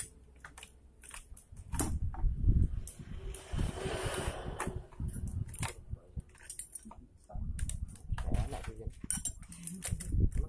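Clicks, clinks and rattles of metal parts and a wiring harness being handled on a partly reassembled Honda Beat FI scooter engine, with dull bumps and a rustling scrape about four seconds in.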